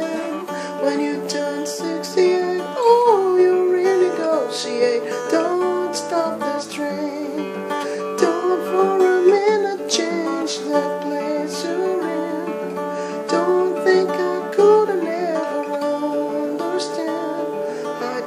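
Acoustic guitar played steadily in a pop-folk pattern, with a man's voice singing over it in places.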